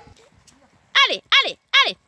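A woman's voice giving three short, high calls in quick succession, urging a cantering pony on, after a faint first second.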